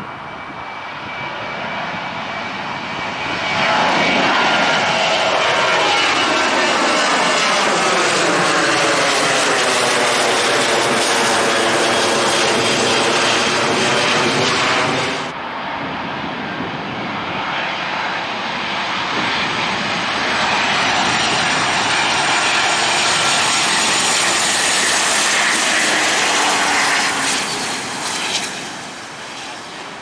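Southwest Boeing 737 jet engines at takeoff thrust as the airliner climbs out, building up over the first few seconds with a sweeping, phasing sound. This cuts off suddenly about halfway through to a second Boeing 737 on approach with its gear down: engine noise with a thin high whine.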